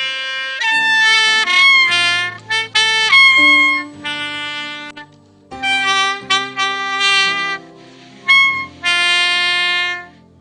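A miked saxophone playing a slow melody of held notes in short phrases, with two brief pauses, by a player out of practice for five years.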